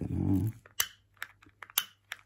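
Piezo igniter element from a Chakkaman lighter being clicked repeatedly: about four sharp, unevenly spaced snaps in the second half, each firing a small spark across pencil graphite on paper.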